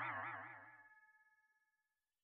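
The fading tail of a cartoon 'boing' sound effect from a logo sting, its pitch wobbling rapidly up and down as it dies away within the first second, followed by silence.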